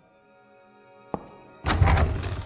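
Background music with held tones; a sharp knock just past one second, then a sudden loud, heavy thud with a low rumble near the end.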